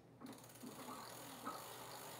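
Faint mechanical whirring and ratchet-like ticking from an electric bike's drivetrain and rear wheel as it is turned over.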